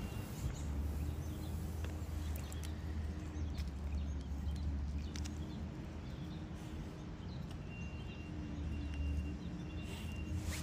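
A white-tailed deer feeding off the ground at close range, with scattered sharp crunches and clicks of it chewing corn over a steady low hum.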